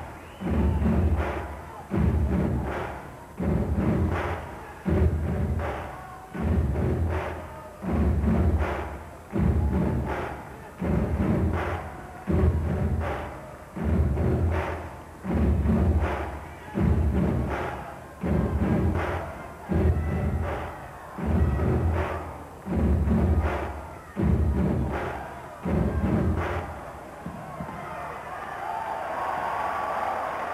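A big drum beaten in a slow, steady beat, about one stroke every second and a half, each stroke booming and dying away. The beat stops a few seconds before the end, and crowd noise from the hall rises.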